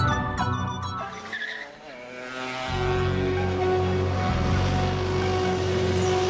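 Film-soundtrack music with bright, bell-like notes fades out about two seconds in. A motor vehicle's engine and road noise then rise in and hold steady, with soft music underneath.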